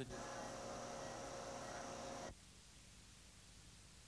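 A steady electrical hum of several pitched tones from operating-room equipment, cutting off abruptly a little over two seconds in, leaving only faint hiss.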